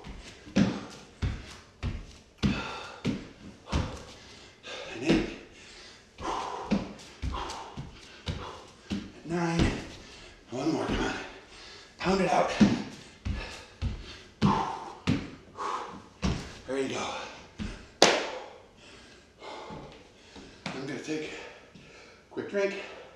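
A man breathing hard in rhythmic, voiced gasps and grunts during a bodyweight exercise, with thuds of hands and feet landing on a wooden floor. One sharper bang comes about 18 seconds in.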